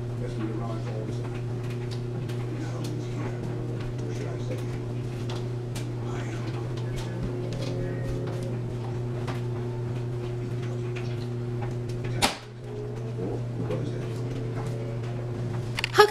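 A steady hum with faint knocks and rustling as clothes are gathered up and carried to a front-loading washing machine, and one sharp knock about twelve seconds in.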